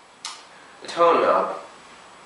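Electric guitar (a '57 Les Paul Junior reissue with a Seymour Duncan '78 Model pickup) through a Deluxe Reverb amp with light compression and overdrive. A sharp pick click about a quarter-second in, then a note or chord struck about a second in that falls in pitch as it fades.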